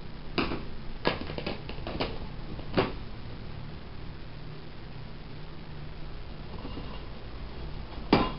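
Plastic enclosure lid set down and snapped shut: about six sharp plastic clicks and knocks in the first three seconds, the loudest near the end of them, then only a low steady hum.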